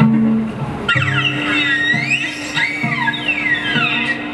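Live instrumental music with a cello. It has low plucked notes and a held tone, and from about a second in, high tones slide up and down in long swoops.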